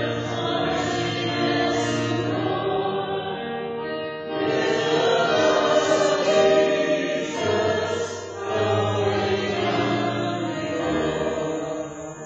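Church music: singing voices over sustained accompaniment, held chords changing every second or two. It thins and fades away near the end.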